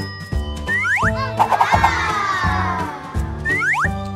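Children's background music with cartoon boing sound effects: quick rising swoops about a second in and again near the end, and a long falling sweep in between.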